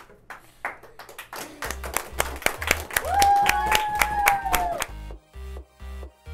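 Hand clapping, joined about two seconds in by electronic dance music with a steady kick-drum beat of about two beats a second. A long held note sounds over it in the middle, and the clapping stops near the end while the music carries on.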